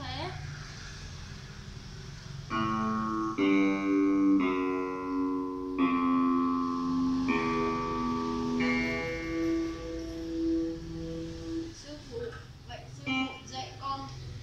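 Electronic keyboard playing a slow line of held notes, each sustained about a second, starting a couple of seconds in and stopping a couple of seconds before the end.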